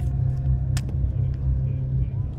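Steady low engine rumble, with one short sharp click a little under a second in.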